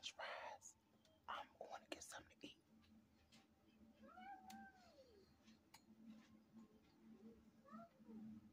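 Near silence with faint sounds: a brief murmur of speech at the start, a few soft clicks, then a faint drawn-out call about a second long that rises and falls in pitch about halfway through, and a shorter rising call near the end.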